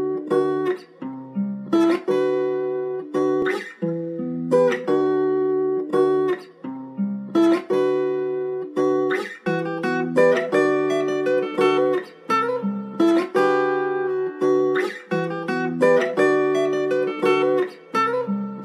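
A guitar plays a looping melody of picked notes alone, without drums, at the start of a hip-hop beat; a short phrase repeats about every four seconds.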